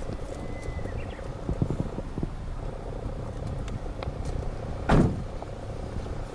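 Steady low rumble with a few light knocks, then one short heavy thump about five seconds in, typical of a car door on the Nissan Bluebird Sylphy being shut.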